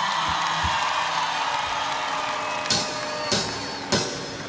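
Live pop-rock band opening a song over a cheering festival crowd: a sustained note rings out, and two short drum hits land near the end.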